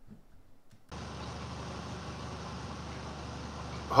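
Steady hum and hiss of a room's air conditioning, starting suddenly about a second in after near silence.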